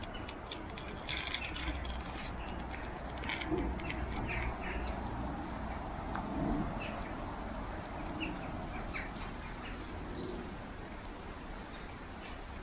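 Riverside outdoor ambience: a steady rush of flowing water and wind, with scattered short bird chirps and soft low hooting or cooing bird calls every couple of seconds.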